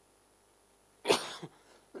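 A man coughing once, sharply, about a second in, with a smaller after-cough right behind it.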